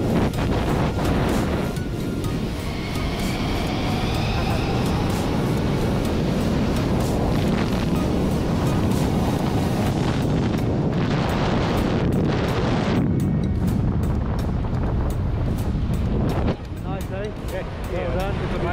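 Steady wind rushing over the camera microphone as a tandem parachute descends under canopy, with background music mixed in.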